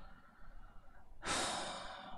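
A person breathing out audibly close to a headset microphone: one long, soft breath starting a little past halfway and fading away.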